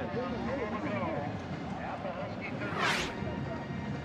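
Stadium crowd background with indistinct voices from the stands and sideline, and a brief, sharp burst of hissing noise about three seconds in.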